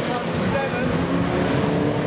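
Engines of several banger racing cars running and revving together, with a brief high-pitched burst about half a second in.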